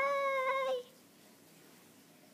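A girl's long, high-pitched squeaky call in a put-on toy voice, held on one note and dipping slightly as it stops under a second in.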